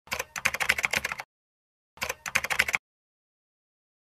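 Typing sound effect: two quick runs of key clicks, the first about a second long and the second shorter, with a dead-silent pause between, matching on-screen text being typed out.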